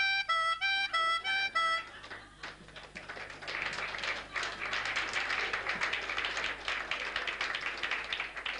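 Chromatic harmonica playing two notes back and forth, like an ambulance siren, for about two seconds, then audience laughter and applause that builds up.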